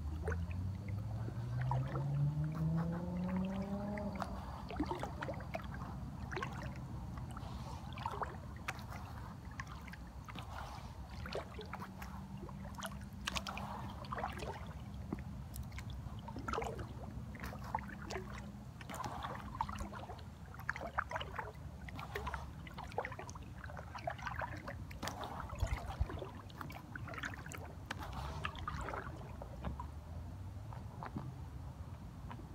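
Kayak paddle strokes in calm lake water: scattered drips, trickles and small splashes as the blades dip and lift. A low drone rises in pitch over the first few seconds, and a steady low hum sounds through the middle.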